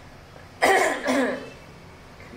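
A woman coughing twice in quick succession, a little over half a second in.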